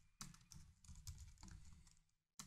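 Faint keystrokes on a computer keyboard: a short run of irregular typing taps.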